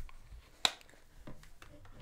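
Quiet room tone with one sharp click about two-thirds of a second in and a couple of fainter clicks later: small handling noises at a desk.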